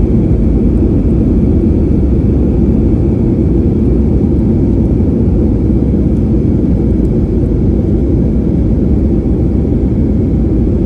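Jet airliner cabin noise during the landing roll on the runway: a loud, steady low rumble of the engines and the aircraft running along the ground, heard from inside the cabin.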